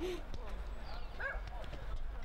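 Players' shouts and calls across a football pitch during play, one near the start and a higher call a little past a second in, with a few short knocks in between.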